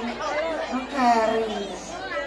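Speech only: people's voices talking over one another, crowd chatter.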